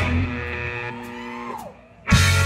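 Electric guitar notes left ringing and dying away as the live rock band drops out, with a note sliding down in pitch near the end.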